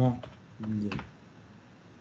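A few keystrokes on a computer keyboard as a misspelled word is corrected, mixed with short bits of a man's voice.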